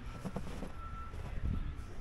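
Street ambience: a low rumble of vehicle traffic with a few soft thumps, and a faint high beep about a second in.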